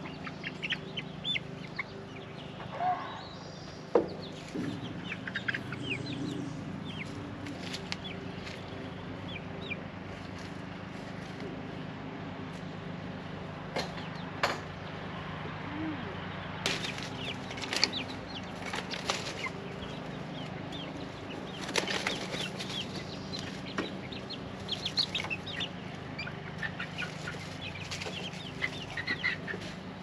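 Young chickens cheeping and clucking in short calls scattered throughout, with a few sharp knocks, over a steady low hum.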